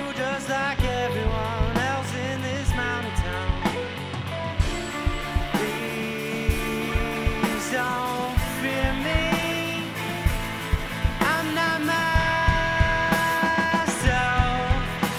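Live rock band playing: drum kit with steady drum hits and cymbals under bass guitar and electric guitars.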